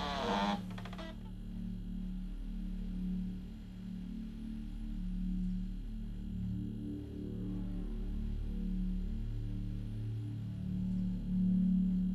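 Low, dark background film score: deep sustained tones that swell and fade slowly, with a brief brighter sound in the first second.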